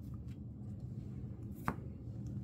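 A single sharp plastic tap near the end, as a photocard in a clear plastic holder is handled against the binder page, over a faint low steady hum.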